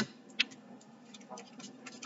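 Tarot cards being handled and shuffled in the hands: a sharp click about half a second in, then a few faint taps and rustles.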